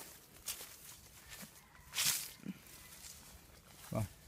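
Short rustles of lime-tree leaves and branches brushing past, the loudest about two seconds in, with faint footsteps.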